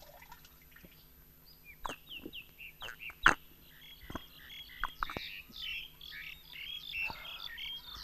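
Small birds chirping in short, quick calls, with a few sharp clicks or knocks and a faint steady hum underneath.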